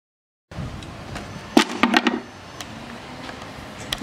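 Silent for the first half second, then low background noise with a quick cluster of sharp knocks and clatter about a second and a half in, and a single click just before the end.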